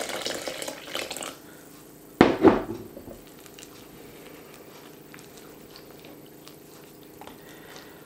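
Warm milk and water poured from a glass measuring jug into a glass mixing bowl of oats and flour, then a sharp knock with a short ring about two seconds in, as the glass jug is set down. After that comes the faint sound of a wooden spoon stirring the batter in the bowl.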